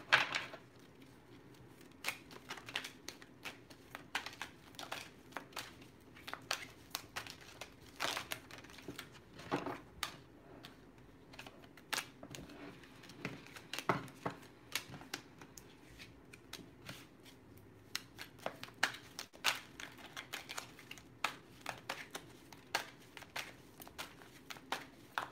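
Tarot cards being handled on a table: faint, irregular clicks and snaps of card against card.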